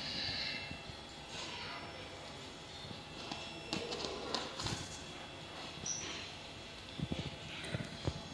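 Soft parrot chatter with scattered light taps and clicks, and a few low knocks near the end.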